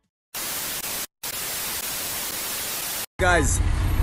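Burst of TV-style white-noise static used as a transition effect, with a brief dropout about a second in and a sudden cutoff just after three seconds. A man's voice over street traffic follows.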